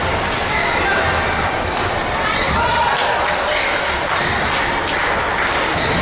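Badminton rackets striking a shuttlecock during a doubles rally: a few sharp hits, several around the middle and more near the end, over continuous background chatter in a large echoing hall.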